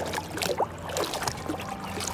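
Lake water lapping and trickling against a boat's swim platform and the water skis resting on it, with small splashes, over a steady low hum.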